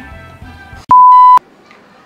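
A single loud electronic beep about a second in: a steady, pure tone of about half a second that starts and stops abruptly. Faint background music comes before it.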